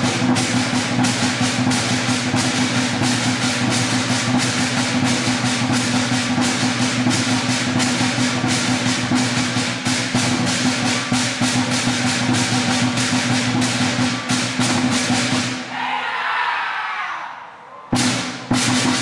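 A lion dance percussion band playing: a large Chinese lion drum beaten in a quick, driving rhythm under clashing cymbals, with a steady ringing underneath. About two seconds before the end the beat breaks off and the sound drops.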